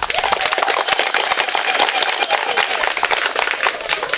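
Crowd applauding: many hands clapping at once in a dense, even patter.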